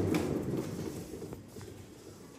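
Large cat exercise wheel turning on its base rollers as a Bengal cat walks in it: a low rumble that dies down after about a second and a half, followed by a few light paw taps.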